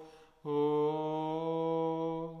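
Orthodox liturgical chant: after a brief pause, a male voice takes up one long, steady note and holds it.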